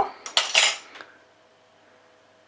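A couple of brief metallic clinks in the stainless steel inner pot of an Instant Pot about half a second in, dying away within a second.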